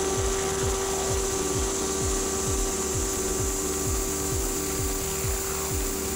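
Air-blown fibre installation equipment running steadily while blowing a fibre unit through a microduct. It makes a machine hum with a steady tone, a high even hiss and a regular low pulsing about three times a second.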